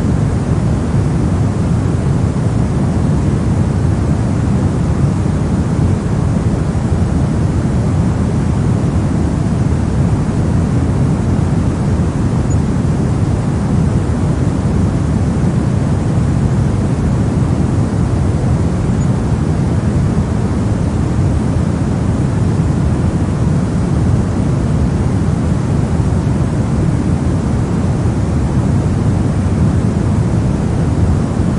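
Steady pink noise: an even, unchanging rush, heaviest in the low end, with no breaks or events.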